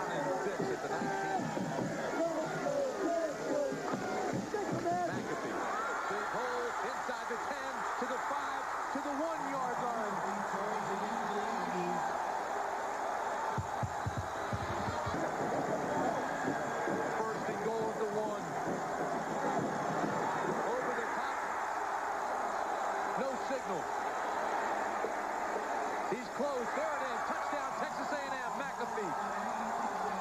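A large stadium crowd at a college football game: many voices yelling and cheering together in a steady din, heard through an old TV broadcast.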